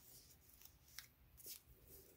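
Near silence with faint, brief rustles and a light tick of a paper pattern piece and fabric being handled and smoothed by hand, the tick about a second in.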